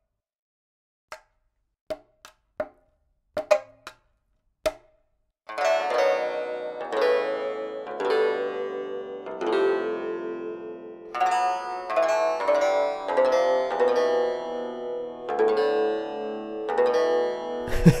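Sampled pipa (Chinese lute) played from a keyboard: a few sparse, short percussive clicks over the first five seconds or so, then a steady run of plucked notes and chords that ring on.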